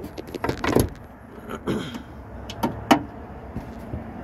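Sharp clicks and metallic knocks of a 2022 Subaru Ascent's open hood being handled for closing, with its metal prop rod taken down and stowed. The loudest knock comes just under a second in, followed by a few lighter clicks.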